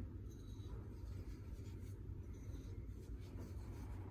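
Faint rubbing and light scraping of hands tossing chicken wings in a bowl to coat them with salt, pepper and paprika.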